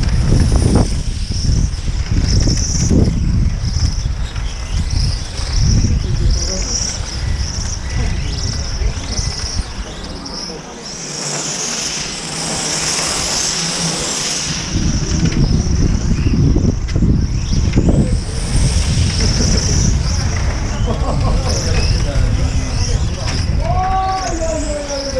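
High-pitched whine of a 1/8-scale nitro RC on-road car engine rising and falling in pitch as the car accelerates and brakes around the circuit, loudest about twelve to fourteen seconds in. Gusty wind rumbles on the microphone.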